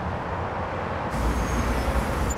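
City traffic ambience: a steady low rumble of distant vehicles with a hiss of street noise, which becomes fuller and louder about a second in.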